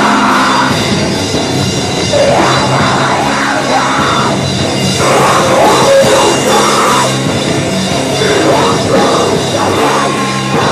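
Hardcore band playing live: distorted electric guitar over a drum kit, loud and dense throughout.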